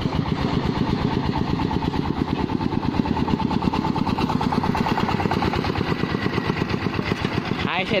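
Single-cylinder diesel engine of a công nông farm tractor running, heard close up, its firing strokes making a rapid, even chugging that holds steady throughout.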